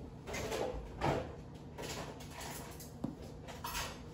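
Soft clatter of kitchenware being moved about in an under-counter kitchen cabinet, with one sharp click about three seconds in.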